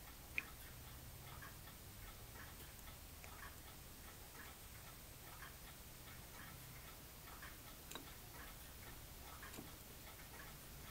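Near silence: a faint low room hum with a faint, regular ticking of about two ticks a second, and one slightly sharper click about half a second in.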